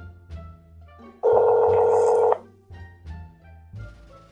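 Background music with plucked notes and a bass line. About a second in it is overlaid by a loud, steady telephone tone held for about a second, from a smartphone on speaker placing an outgoing call.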